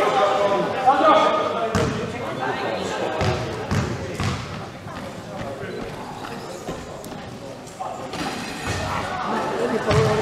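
A basketball bouncing several times on a wooden hall floor, among indistinct shouting voices in a large, reverberant sports hall.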